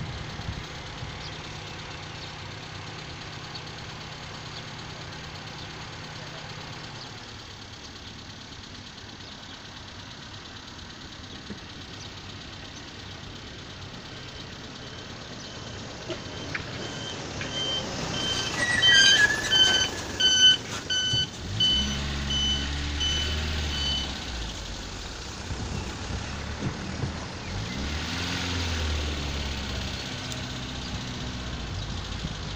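Car running along a road, heard from inside the cabin as a steady low engine and road hum. About halfway through, a series of short, repeated high electronic beeps sounds for several seconds. After that the engine gets louder and its pitch rises and falls.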